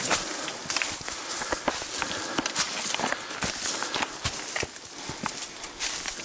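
Footsteps of hikers crunching on a dry, stony, leaf-covered trail, with sharp, irregular clicks of trekking-pole tips striking rock.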